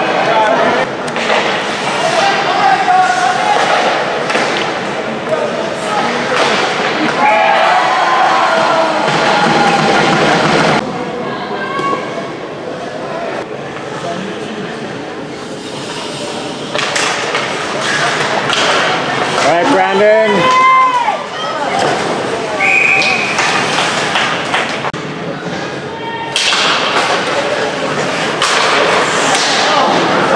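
Ice hockey game heard from the stands: spectators' voices and shouts over the rink's din, with repeated thuds of the puck and players against the boards.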